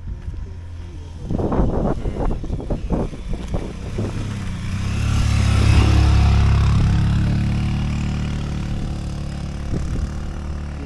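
A motor vehicle drives past: its low engine rumble builds from about four seconds in, is loudest around six seconds, and slowly fades away.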